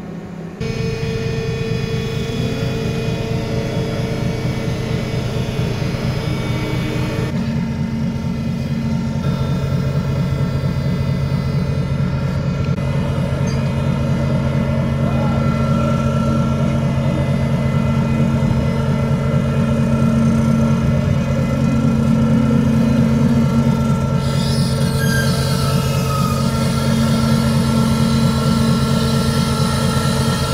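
Ship's machinery running with a steady low hum and several steady tones. The sound changes character about seven seconds in, as an inflatable boat is lowered over the side on the ship's crane.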